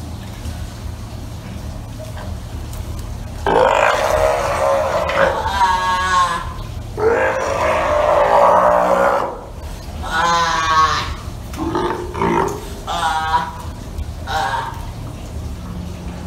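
Adult female Steller sea lion giving a series of loud, rough roaring calls, about six of them beginning a few seconds in, to warn off her pup as it tries to come closer. A steady low hum runs underneath.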